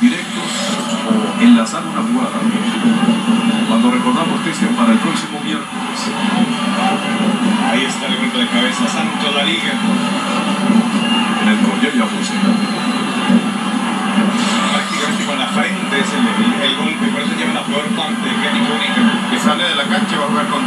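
Sound of a televised football match heard through a TV set's speaker: a steady murmur of stadium crowd noise with no commentary.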